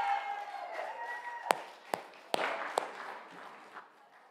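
Indistinct voices, then four sharp knocks about half a second apart, with the sound fading out near the end.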